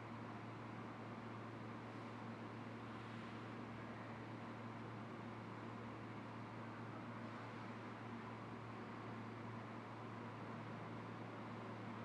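Steady faint hiss with a low hum underneath, unchanging throughout: room tone and recording noise, with no distinct sound events.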